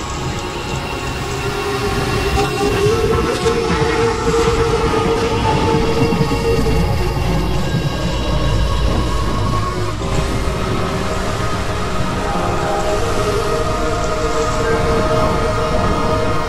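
Experimental electronic music: a dense, rumbling, train-like noise layer with many steady held tones, getting a little louder about two seconds in.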